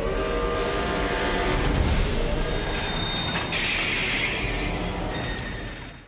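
A train running, with high squealing tones about two and a half seconds in, followed by a burst of hissing. The sound dies away at the very end.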